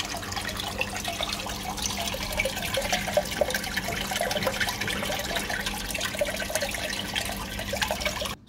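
Water gushing steadily from a canister filter's PVC return pipe and splashing onto the aquarium's surface: the filter is primed and flowing well again after cleaning.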